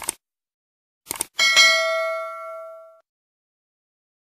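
Subscribe-button animation sound effect: a short click, then a quick double click about a second in, followed by a single bright notification-bell ding that rings out and fades over about a second and a half.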